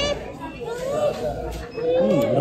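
Background voices in a busy restaurant hall, including children's voices and chatter.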